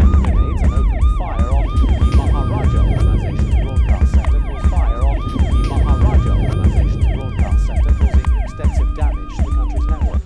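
Emergency-vehicle siren on a fast yelp, its pitch rising and falling about three times a second, over a deep low rumble and music.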